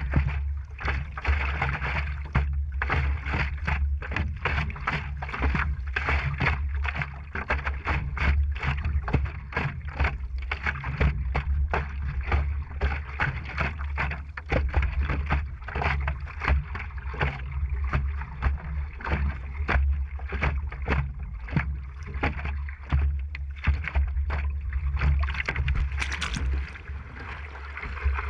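Water slapping and splashing around a stand-up paddleboard and its paddle strokes, recorded by a board-mounted GoPro with a steady low wind rumble on its microphone. A sharper splash comes near the end, about when the paddler goes into the freezing water.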